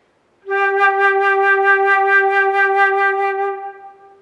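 Flute holding a single G natural with fast, heavy vibrato, the tone pulsing rapidly and evenly. It starts about half a second in and fades out near the end.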